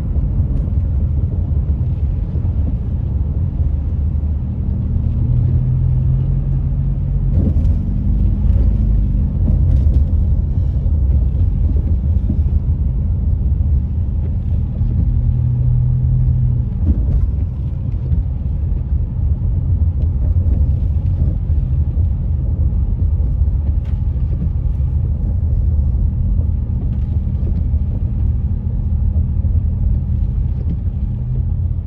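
Car cabin noise while driving on a rain-wet road: a steady low rumble of engine and tyres, with a low engine tone that comes up twice, around five seconds in and again around fifteen seconds in.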